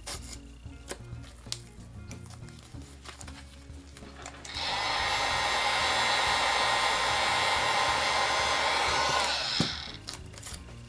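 A handheld heat gun switched on about halfway through, blowing steadily for about five seconds onto painter's tape that won't peel off easily, then cutting off with a click near the end.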